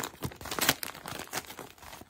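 Gift wrapping paper crinkling in quick, irregular rustles as a present is unwrapped by hand, with the loudest crackle a little before the middle.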